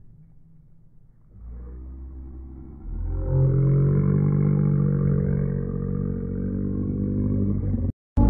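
An engine revving, muffled and without any high end. It comes in about a second and a half in, rises sharply about three seconds in, then holds at high revs before cutting off abruptly at the end.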